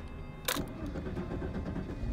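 A car's starter cranks the engine, with a click as the ignition key is turned about half a second in. The engine does not catch, as the fuel system refills after the car ran out of gas.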